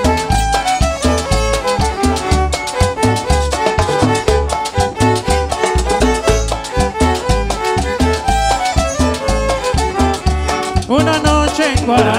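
Live Latin dance band playing an upbeat instrumental passage with a steady, pulsing bass beat and a bright melody over it; a singer comes in near the end.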